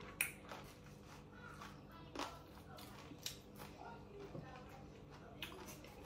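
A kitchen knife cutting into a mango over a glass bowl: about half a dozen faint, sharp clicks and taps, roughly one a second, the loudest just after the start.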